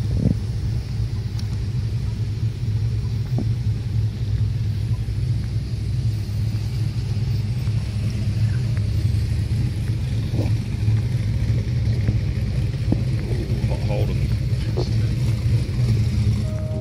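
Steady low road rumble of a car being driven, heard from inside the cabin.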